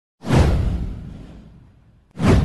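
Intro whoosh sound effect: a sudden swoosh with a deep low boom underneath that falls in pitch and fades away over about a second and a half.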